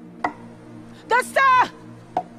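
A sharp click, then a person's voice in one short cry that rises and then falls, over a faint steady low hum.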